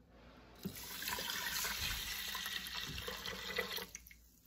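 Cold water poured from a plastic bowl into the stainless steel inner pot of an Instant Pot, over dry steel-cut oats: a steady pour that starts about half a second in and stops near the end.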